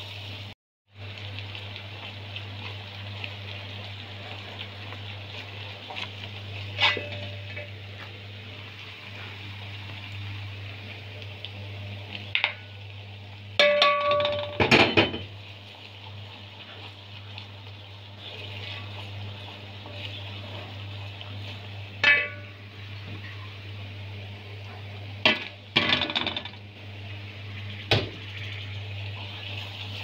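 Onions, spices and grated carrots sizzling in oil in a large metal pot over a steady low hum, while a spoon now and then knocks and scrapes against the pot. The loudest clanking, some of it ringing, comes in a cluster about halfway through.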